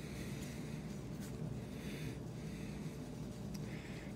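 Faint soft rubbing of gloved hands rolling sticky pumpkin pie mixture into a ball, over a low steady hum.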